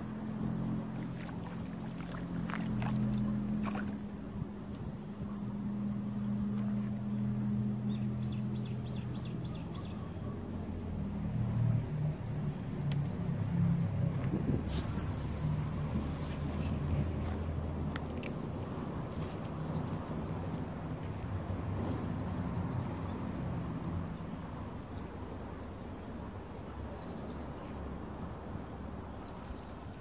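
A distant engine running with a low, steady drone that shifts in pitch a few times. A small bird gives a quick run of high chirps about eight seconds in, and a couple more near the eighteen-second mark.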